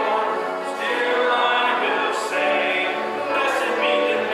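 Church congregation singing a hymn together, many voices holding long notes.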